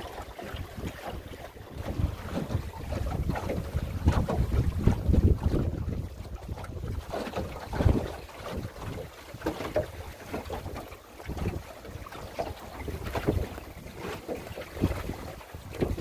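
Wind buffeting the microphone in uneven gusts, strongest about a third of the way in, over water splashing along the hull of a small open sailboat (a Drascombe Lugger) under sail in a chop.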